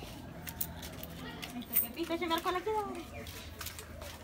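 Faint voices talking in the background, loudest for about a second near the middle, with a few light clicks of handling.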